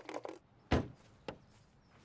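A car door shutting with a single solid thud, followed about half a second later by a lighter knock.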